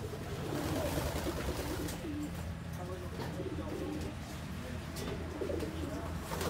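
Birds cooing, with low, wavering calls repeated several times.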